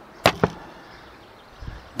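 Two quick hard plastic clicks, about a fifth of a second apart, as a cordless drill's battery pack is handled against its plastic charger base.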